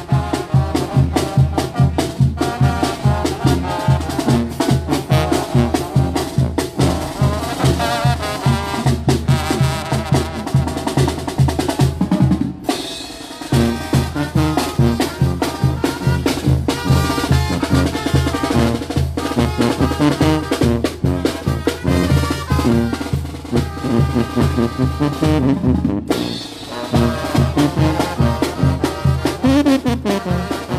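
Zacatecan tamborazo band playing live: trumpets and other brass, with tuba, over a steady, driving beat of tambora bass drum and snare. The low drums drop out briefly twice, about halfway through and again near the end.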